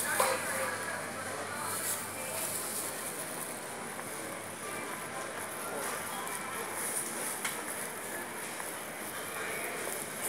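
Steady supermarket background sound: faint, distant voices of other shoppers over quiet in-store background music.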